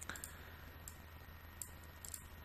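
A few faint, sharp computer mouse clicks over a low steady hum.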